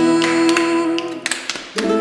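Live acoustic-band music with no singing: guitars hold a ringing chord with sharp hand claps over it. A little over a second in the chord drops out, leaving a few lone claps, and the guitars come back in near the end.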